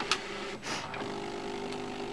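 Thermal copier's feed motor running steadily as its rollers draw the thermal stencil sheet and tattoo design through, a steady hum that firms up about a second in. A couple of short rustles come in the first second.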